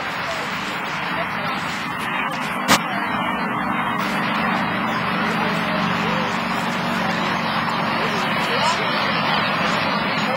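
Indistinct background voices over a steady wash of noise, with one sharp click just under three seconds in.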